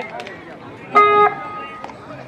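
A single bright guitar-like musical note, struck suddenly about a second in and ringing briefly before fading to a fainter held tone, over faint background voices.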